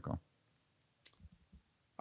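A quiet pause holding one faint click about a second in, followed by a few softer small sounds.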